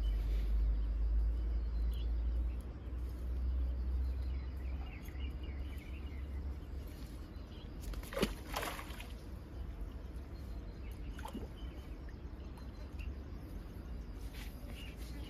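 A fish splashing briefly in a keep net at the water's edge about eight seconds in, after a low rumble in the first few seconds.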